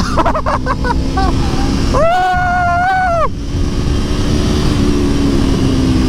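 Aprilia Tuono V4 1100's V4 engine pulling hard under acceleration, its steady tone rising a little near the end, under heavy wind rush on the helmet microphone. A long held whoop from the rider cuts in about two seconds in.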